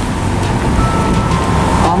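Steady low rumble on the open deck of a car ferry under way: the ship's engine and wind on the microphone, with a faint thin hum above it.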